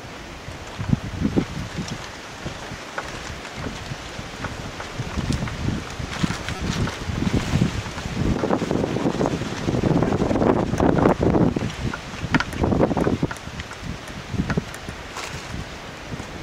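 Wind buffeting the camera microphone in uneven gusts, heaviest in the second half.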